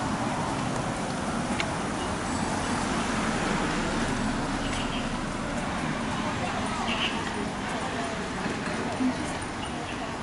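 Steady city street noise from road traffic, with indistinct voices mixed in.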